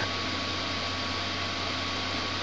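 Steady background hiss with a faint steady hum and a thin constant tone: the room tone of the recording, with nothing else happening.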